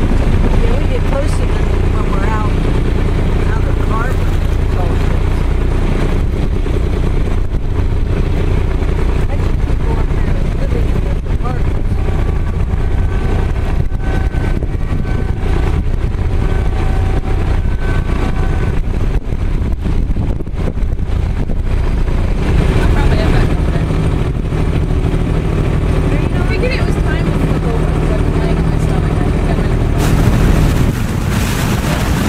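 Boat engine running steadily under way, a constant low rumble, with indistinct voices of people on board now and then.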